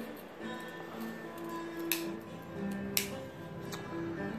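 Background music with steady held notes, cut by two sharp clicks about two and three seconds in: the tools of a Victorinox Ranger Wood 55 Swiss Army knife snapping against their backspring as they are opened and closed.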